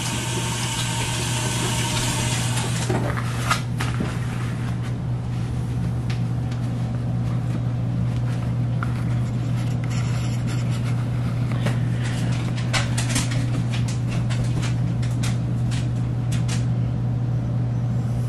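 Kitchen faucet running in a steady stream over hands being washed at a steel sink, over a constant low hum, with a few sharp clicks and knocks scattered through the second half.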